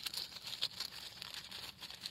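Dry leaf litter rustling and crackling in short, irregular ticks as a hand pulls a mushroom from the forest floor.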